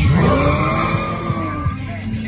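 Swapped LSX V8 in a 1980 Chevrolet Caprice revving hard, its pitch climbing sharply in the first half second and then holding and easing off a little, with the rear tires squealing as they spin.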